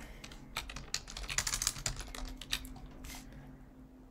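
Computer keyboard typing: a quick run of key clicks that starts about half a second in and stops about three seconds in.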